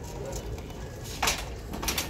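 Wire shopping cart being pushed across carpet: a low steady rolling rumble, with two sharp rattles of the wire basket a little over half a second apart, past the middle.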